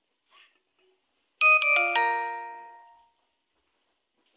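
An electronic chime: three ringing notes struck in quick succession about a second and a half in, then fading away over about a second.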